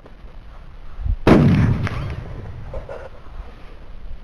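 A single loud gunshot about a second in, with a sharp onset and a tail that fades over most of a second.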